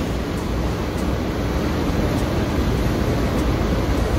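Steady background noise with a low rumble and no distinct events: room tone.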